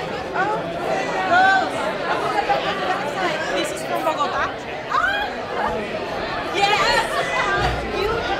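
Crowd chatter in a large hall: many people talking over one another at once, with no single voice standing out.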